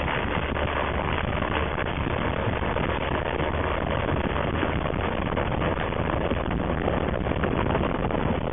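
Steady engine noise mixed with wind rush: a light floatplane's engine running at takeoff power as it rides a trailer towed at speed by a pickup truck, lifting off near the end.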